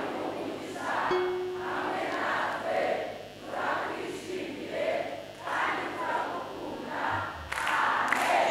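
A congregation shouting and cheering together in repeated swells, about one a second.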